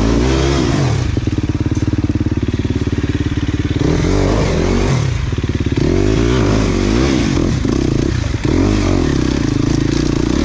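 Enduro dirt bike engine under way on a rough trail, revving up and down repeatedly as the rider opens and closes the throttle, with the rise and fall of each rev clearly heard several times.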